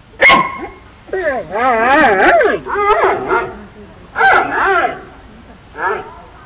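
Giant panda calling: a sharp, short call right at the start, then a series of long whining bleats that waver up and down in pitch.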